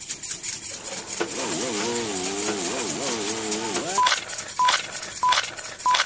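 Opening of a recorded track over a steady hiss: a wavering, voice-like tone lasting about two and a half seconds, then four short high beeps about two-thirds of a second apart, like a count-in.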